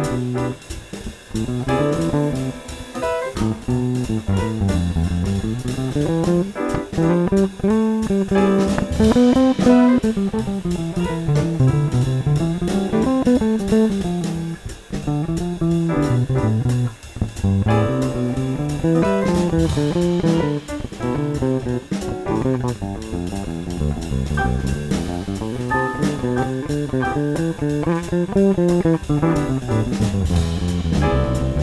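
Electric bass improvising on the C major scale (Ionian mode) over a Cmaj7 chord, in phrases that climb and fall in pitch, with a drum kit accompanying.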